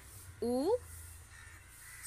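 A single short spoken syllable, rising in pitch, about half a second in; the rest is quiet with a low steady hum.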